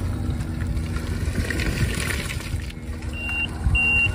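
Linde forklift driving, its running noise steady and low. Near the end its warning beeper starts: two short, high beeps about half a second apart.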